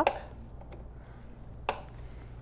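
Low steady hum with a single sharp click near the end: a white scoring stylus set down against a craft scoring board after scoring a card.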